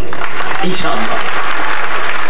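Large crowd applauding: a dense, even clatter of many hands clapping that starts suddenly as the speech stops.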